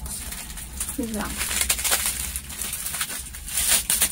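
Plastic wrapping crinkling and rustling as a wristwatch is unwrapped by hand, getting louder near the end, with a brief vocal sound about a second in.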